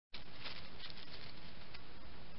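A hedgehog rustling and crackling in dry leaf litter as it forages, with a flurry of small crackles in the first second or so and one more near the end, over a steady background hiss.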